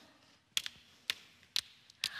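A few light, sharp taps, roughly half a second apart, with quiet between them.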